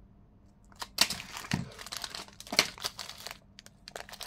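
Plastic packaging crinkling and rustling in the hands as an anti-static foil bag is opened and a small plastic bag of brass standoffs and screws is pulled out. It starts about a second in as a run of irregular crackles.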